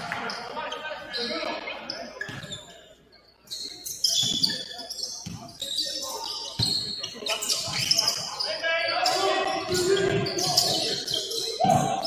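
Basketball dribbled on a hardwood gym floor during play, a series of sharp bounces ringing in a large hall, mixed with short high squeaks and players' voices.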